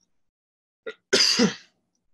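A single short cough, loud and rough, about a second in, with a faint click just before it.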